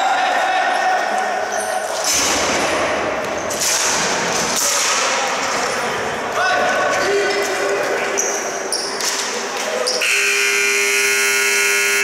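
Ball hockey game noise with players' voices, then an arena buzzer sounding one long steady note starting about two seconds before the end.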